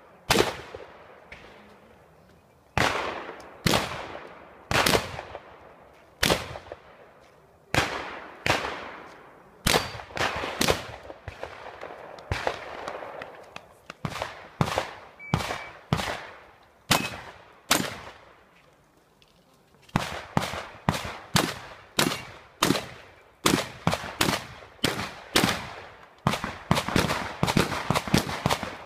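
Shotgun shots fired in strings, each a sharp report with a short ringing echo: a shot at the start, a lull of about two seconds, then shooting at roughly one shot a second, a short lull about two-thirds of the way through, and quicker shots, about two a second, near the end.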